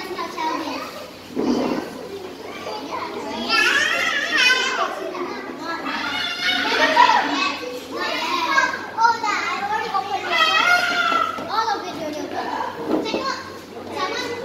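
A group of young girls' voices chattering and calling out over one another, high-pitched, busiest and loudest from about three seconds in until near the end.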